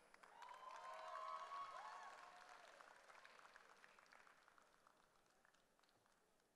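Faint audience applause with a cheering voice over it, swelling briefly and then dying away within about four seconds.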